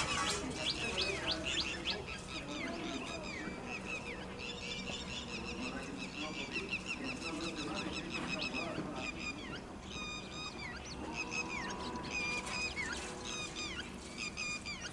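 Many birds calling from the surrounding trees: a dense, continuous chatter of short, high, gliding chirps and whistles, with quick repeated notes near the end.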